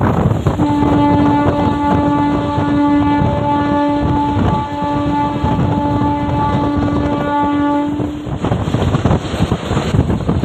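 Passenger train's locomotive horn sounded in one long blast of nearly eight seconds that breaks off briefly twice, heard from inside the moving coach over wind and rolling noise.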